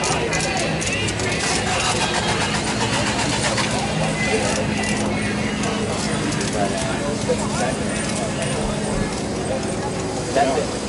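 Background talk of people around the cars, with a steady low hum running through the middle several seconds.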